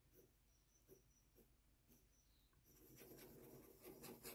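Near silence, then in about the last second a faint scratching of a Parker 45 fountain pen's nib moving over notebook paper.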